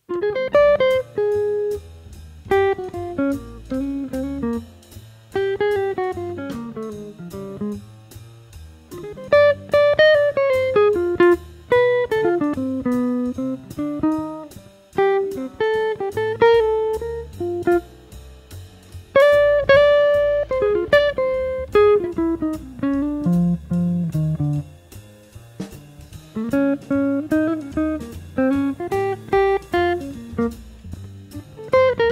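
Archtop jazz guitar playing a fast improvised single-note solo through a jazz blues, building lines from minor triads played off the fifth of each dominant chord, decorated with approach notes, slides and enclosures. A bass and drum backing runs beneath it.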